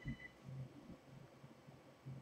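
Near silence: faint room tone. A faint high pulsing tone stops just after the start.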